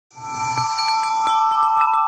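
Chime sound effect: a cluster of bright ringing tones that start together just after the opening, with a brief high shimmer at the onset and light repeated strikes ringing on over it.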